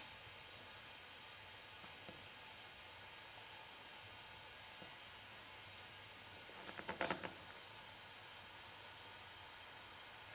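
Faint steady hiss with a brief cluster of several sharp clicks about seven seconds in.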